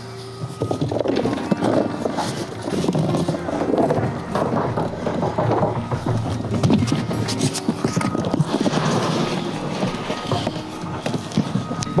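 Loose flower bulbs clattering and rattling as crates are tipped into a red tractor-mounted spreader hopper, with background music.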